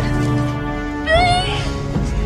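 Dramatic film score with sustained low notes, and a short, high wordless vocal cry about a second in.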